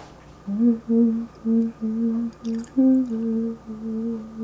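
A person humming a tune, a string of short held notes with brief gaps between them.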